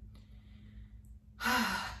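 A woman sighs: one breathy, partly voiced exhale about one and a half seconds in, after a quiet pause.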